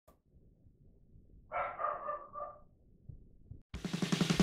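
A short animal call of two or three quick yelps about a second and a half in, against a quiet background. Music starts abruptly just before the end.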